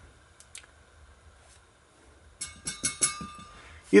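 A 70-watt high pressure sodium ballast trying to strike an arc in a 1000-watt sodium bulb that has just gone out, over a low steady hum. It is quiet at first; then, about two and a half seconds in, a burst of irregular sharp clicks with a faint high buzz runs for about a second and a half.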